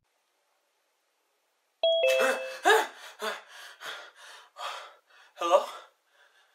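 A short electronic chime of steady tones sounds suddenly about two seconds in, followed by a man's wordless vocal exclamations.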